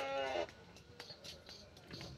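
A farm animal calling, most like a cow's moo: one long call held at a steady pitch that stops about half a second in. Faint knocks and clicks follow.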